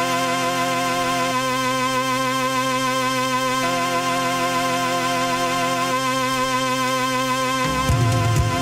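Live rock recording: held keyboard chords that change every two seconds or so, with the rest of the band, heavier bass and drums, coming in near the end.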